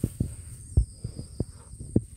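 Cow chewing and tearing grass right at the microphone: a quick run of short, low, uneven thumps, the loudest a little under a second in.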